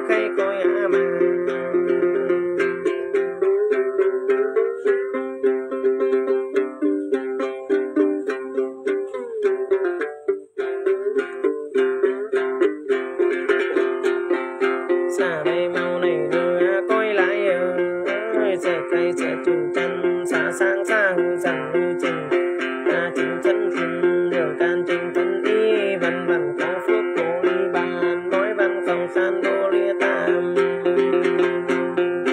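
Đàn tính, the Tày-Nùng long-necked gourd lute, plucked in a steady repeating pattern as accompaniment to a man singing a Then ritual chant, with a brief break in the playing about ten seconds in.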